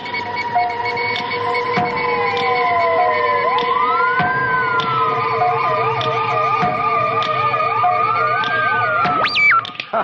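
Electronic computer-game sound effects: steady beeping tones with slow sliding pitches, joined about halfway through by a fast warbling siren-like tone, and a sharp upward-and-back pitch sweep near the end.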